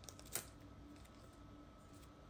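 Near silence, room tone only, broken by one short click about a third of a second in.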